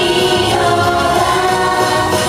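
A group of young women singing a pop song together into microphones over backing music, heard through the stage PA speakers.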